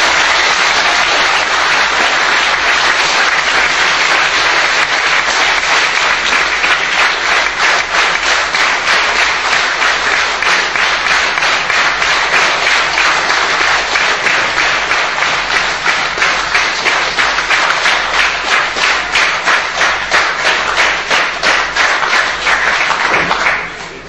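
A large audience applauding at length. The clapping settles into an even, rhythmic beat in its second half and stops abruptly near the end.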